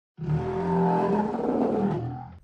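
A growling roar sound effect stands for the dinosaurs. It starts suddenly, holds loud and rough for nearly two seconds, then fades away.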